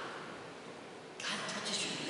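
A man speaking, with a pause of about a second filled by a low, steady hiss before his voice comes back.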